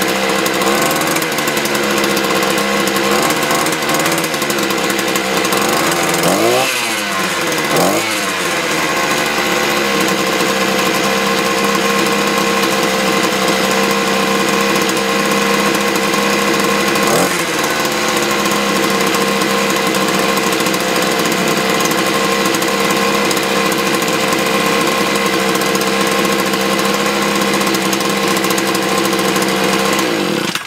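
Hyundai multi-tool's petrol engine running steadily at idle just after a cold start, having sat unused for months in freezing weather. It is revved up and down twice about six to eight seconds in, and blipped briefly again about halfway through.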